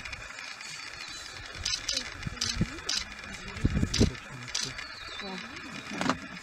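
Hushed human voices murmuring, with a few short hissy sounds and a louder low burst about four seconds in.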